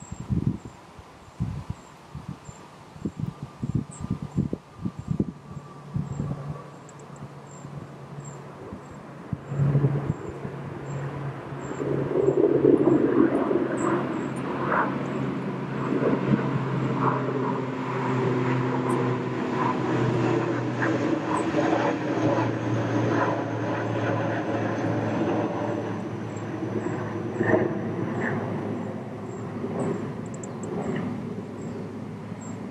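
A few irregular knocks in the first several seconds, then a steady engine drone that builds up about ten seconds in and stays loud.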